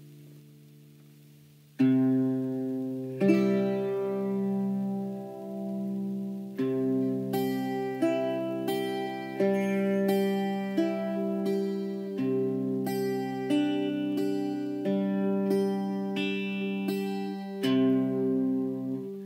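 Irish bouzouki played solo. A faint fading ring leads into a loud plucked chord about two seconds in, followed by a slow run of plucked notes and chords over low strings left ringing.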